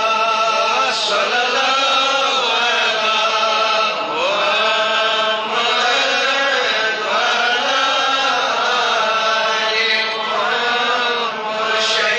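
A voice singing an Urdu devotional naat unaccompanied, in long, drawn-out lines with notes that slide up and down.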